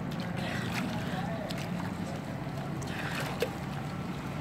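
Pool water sloshing and lapping at the edge as a swimmer dips her head under and surfaces, over a steady low hum, with faint voices in the distance.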